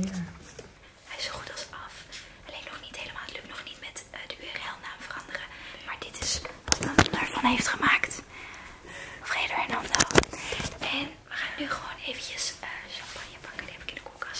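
Women whispering to each other, broken by a few sharp knocks about halfway through and again a few seconds later.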